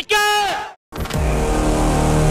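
A man shouts a slogan, cut off sharply; about a second in, the loud din of a street procession begins: crowd noise with drums and a steady droning tone.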